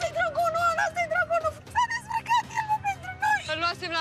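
A woman talking excitedly over background music.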